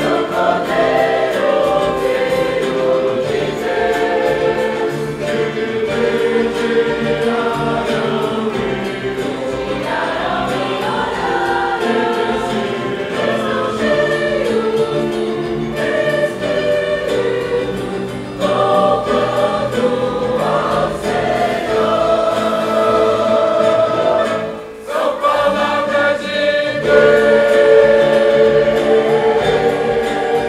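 Congregation singing a hymn together in the room, accompanied by a small church ensemble of violins and guitars, with a brief break between phrases about 25 seconds in.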